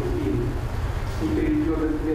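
A man's low voice reading aloud, indistinct, over a steady low hum.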